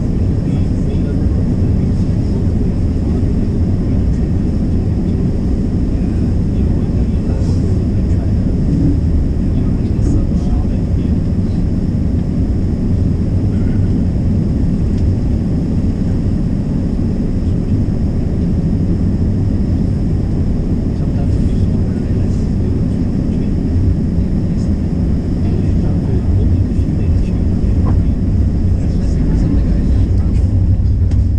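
Steady low rumble of a streetcar running along its rails, heard from inside the car.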